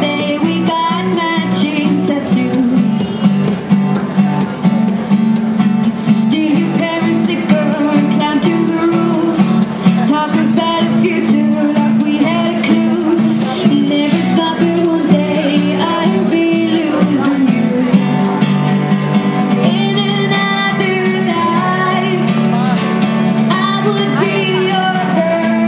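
A woman singing to her own strummed acoustic guitar, both played through a small portable amplifier.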